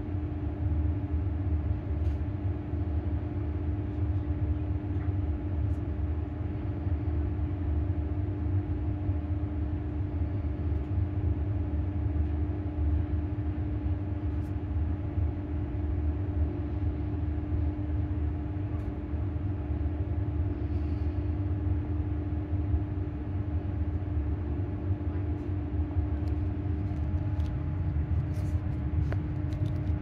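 Inside a moving electric passenger train: a steady low running rumble with a constant hum at one unchanging pitch as it travels at even speed. A few light clicks and rattles come near the end.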